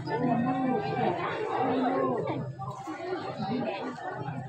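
Many people talking at once close by: the overlapping chatter of a crowd of spectators.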